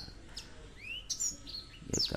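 Small birds chirping: a few short high chirps and a rising whistle about midway.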